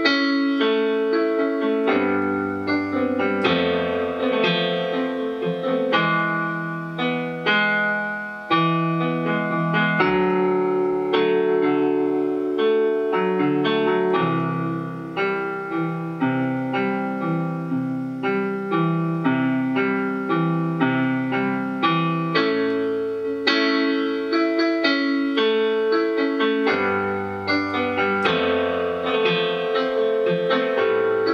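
Kurzweil digital piano played with a piano sound: a slow piece of major chords over a moving bass line, new notes struck every half second or so.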